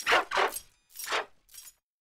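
Cartoon dog barks run through a pitch-shifted 'G Major' audio edit: four short barks, the last one fainter.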